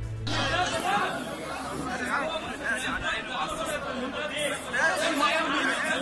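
Many men talking and shouting over one another in a heated argument, a dense tangle of overlapping voices. The last of a short intro music cue ends about half a second in.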